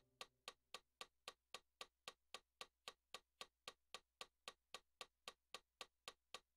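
Faint, steady clicks of a digital piano's built-in metronome, about four a second (roughly 225 beats a minute).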